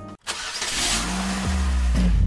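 A car engine starting and revving, used as a sound effect, swelling in loudness after a brief silence.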